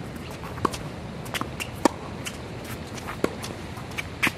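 Tennis rally on a hard court: a handful of sharp pops as the ball is struck by racquets and bounces on the court, the loudest about two seconds in.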